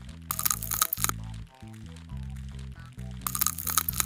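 Background music with a steady low bass line, broken twice by a loud burst of sharp crackling, each lasting under a second, one near the start and one near the end. The crackling is the crunchy sound effect given to a scalpel scraping ticks off skin.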